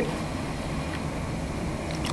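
Steady low room hum with two faint clicks of toenail nippers snipping a tightly curved toenail, about a second in and near the end.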